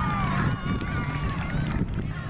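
Several high-pitched voices calling out and chatting across an open soccer field, none of them clear words.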